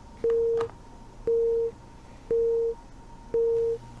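Telephone busy signal: a steady beep repeating about once a second, half a second on and half a second off, four beeps in all, each starting with a faint click.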